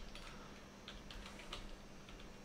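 Typing on a computer keyboard: a quick, irregular run of about ten faint key clicks as an email address is typed.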